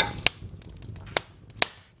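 Kindling fire in a woodstove firebox crackling, with three sharp pops over a quiet hiss.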